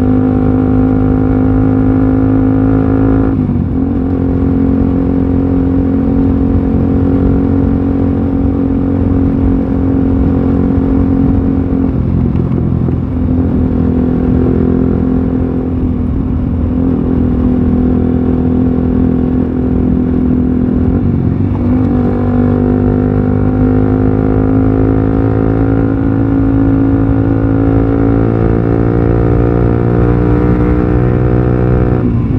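Motorcycle engine running steadily at road speed. Its note breaks and shifts pitch briefly a few times, then climbs slowly over the last several seconds.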